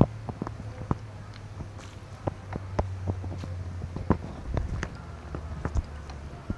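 Light clicks and taps at irregular intervals, several a second, over a low steady hum.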